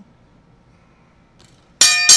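After a quiet lull, a ring bell is struck once near the end and rings on with a clear metallic tone, the cue for a change to the next topic.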